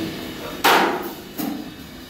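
Free-improvised drum and piano music: a loud, sharp struck hit about two-thirds of a second in that rings off, then a softer hit a little past halfway.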